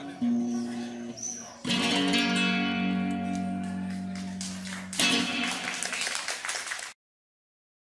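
Nylon-string classical guitar played as a closing flourish: a few plucked notes, then a full strummed chord left ringing, and a second strummed chord about five seconds in. The sound cuts off abruptly about a second before the end.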